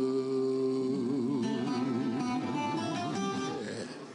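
The closing bars of a live blues song: a harmonica holds a long note that starts to waver about a second in, over a quieter accompaniment, and the music fades out near the end.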